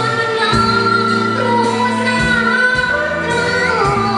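A woman singing long held notes into a microphone over a live band, with electric bass and drums.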